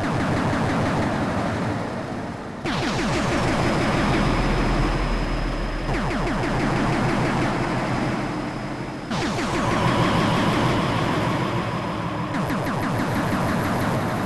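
Live modular synthesizer jam from a Eurorack and Moog semi-modular rig: a dense, noisy electronic drone with fast pulsing, restarted by a falling pitch sweep about every three seconds, with a thin high tone held above it.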